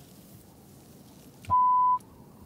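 A half-second censor bleep near the end: one steady, high, pure beep that blanks out everything else, after faint background hiss.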